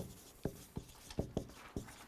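Faint, irregular small clicks and light scratching, about two or three a second, during a pause in speech.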